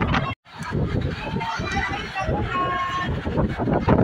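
Crowd chatter: many voices talking at once in a busy gathering, with the sound cutting out completely for a moment about half a second in.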